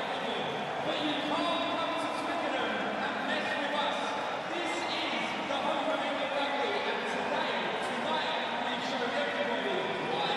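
Stadium crowd of rugby supporters: many voices talking and shouting at once, a steady din.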